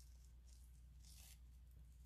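Near silence: a faint rustle of textured ribbon being handled and tied into a bow, a little past the middle, over a low steady hum.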